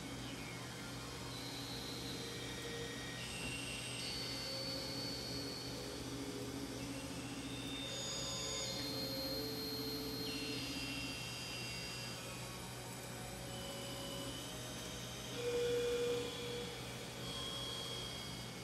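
Synthesizer drones: several sustained electronic tones that come and go at shifting pitches over a constant low hum. A mid-pitched tone swells louder for about a second near the end.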